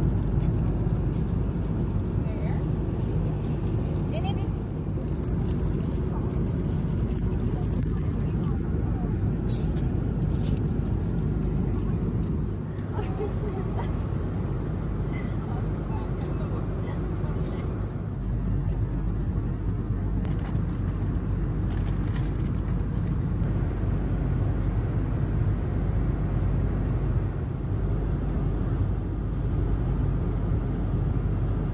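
Steady low jet-engine and airflow noise inside the economy cabin of an Airbus A330-300 airliner in flight, with faint voices under it. The lowest rumble grows stronger a little past the middle.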